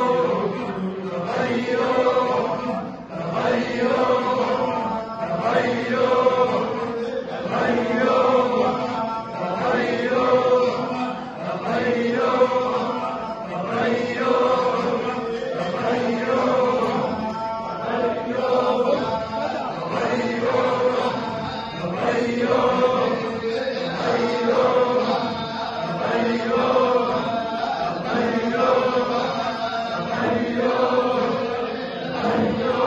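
A group of men chanting dhikr in unison, a short phrase repeated in a steady rhythm about every two seconds.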